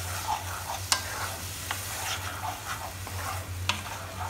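A spatula stirring thick tomato-purée masala gravy in a hot pan, mixing in just-added spices and salt: scraping through the gravy over a steady sizzle, with a few sharp clicks of the spatula against the pan. A low steady hum runs underneath.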